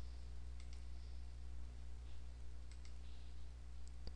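Faint computer mouse clicks: a quick double click about half a second in and another near three seconds, over a steady low electrical hum.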